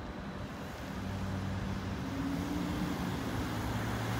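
Steady street noise with a motor vehicle's engine hum that comes in about a second in and grows louder.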